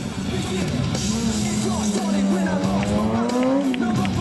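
Rock music over a sportbike engine pulling hard down the approach, its pitch climbing steadily, then falling away just before the end as the throttle is shut for the stoppie.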